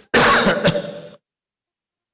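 A man clearing his throat, one loud rough rasp about a second long with a short catch partway through.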